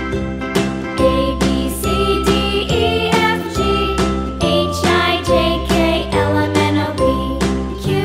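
Instrumental children's background music: a bright, jingly melody over bass notes and a steady beat of about two strokes a second.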